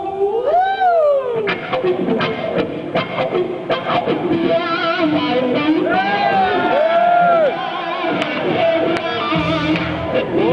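Electric guitar playing a live lead line with wide string bends and vibrato over the band's accompaniment.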